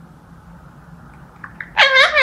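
A blue Indian ringneck parakeet gives a loud, drawn-out call near the end, rising slightly in pitch, after two faint clicks.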